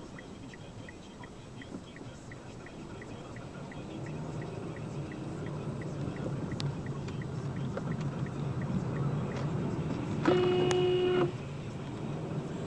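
A car's engine and road noise heard from inside the cabin, growing louder, with a fast regular ticking of about three a second for the first two-thirds. Near the end a car horn sounds once for about a second, the loudest sound.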